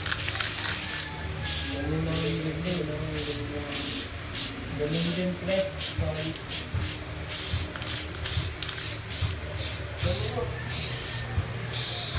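Aerosol spray paint can hissing as paint goes onto a wall: one steady spray at first, then many short bursts, about two a second, until near the end.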